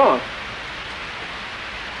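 Television static: a steady, even hiss from an old TV set receiving no signal, because the station has gone off the air.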